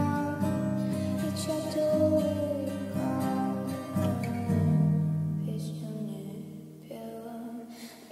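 Music: a slow song passage with guitar and long held notes, growing quieter near the end.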